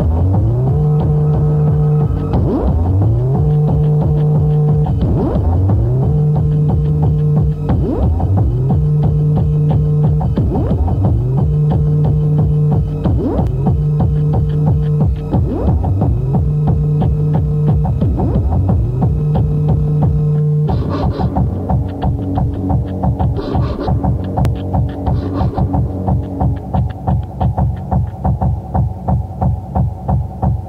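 Hardtek tekno track: fast driving beats under a bass line that slides up in pitch and holds, repeating every two and a half seconds or so. About 21 seconds in the sliding bass drops out and the track switches to a choppier, pulsing pattern with short high stabs.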